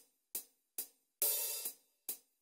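Programmed hi-hat track in Cubase 5 playing back on its own. Short closed hi-hat strokes come about two a second, and an open hi-hat rings for about half a second a little past a second in.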